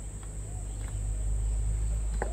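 Steady high-pitched drone of insects, with a low rumble underneath that grows in the second half.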